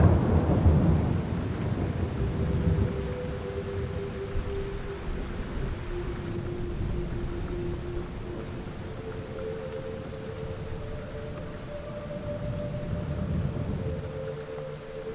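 Steady rain with a low rumble of thunder that fades over the first few seconds.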